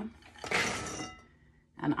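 About four cups of pecans poured from a glass prep bowl into a bowl: a short rush of nuts clattering against glass for about half a second, with a faint glassy ringing after.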